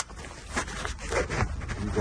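Handling noise from a camera phone being lowered and moved about against clothing: a sharp click at the start, then a few short rustles and scrapes.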